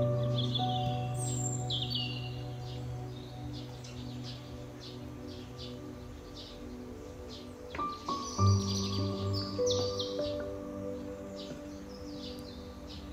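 Calm, slow instrumental background music of long held notes, with a fresh chord struck about eight seconds in. Birds chirp and sing over it throughout.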